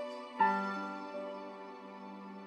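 Slow, tender piano instrumental played on a Casio CTK-691 keyboard's piano voice: a chord is struck about half a second in and left to ring and fade, with a softer single note added a little past one second.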